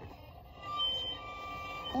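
Solo violin: the end of a loud phrase dies away, then from about half a second in the violin plays quietly and high, with long held notes.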